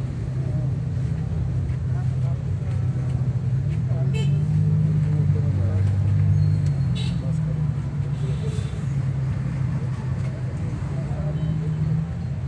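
Suzuki Mehran's small three-cylinder petrol engine idling steadily with the bonnet open, swelling briefly in the middle.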